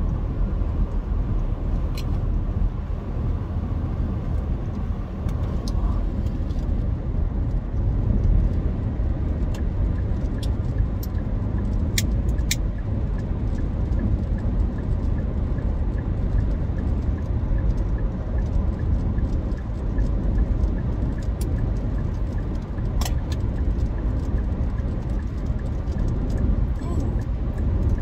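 Steady low road and engine rumble inside the cabin of a car moving at highway speed, with a few sharp clicks scattered through it.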